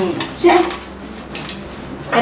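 A few sharp clinks of glass, the last one ringing briefly, as a bottle is handled at a glass-topped table; a short spoken syllable comes about half a second in.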